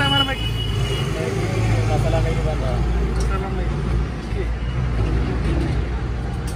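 Busy street-side background: a steady low rumble, with people talking now and then over it.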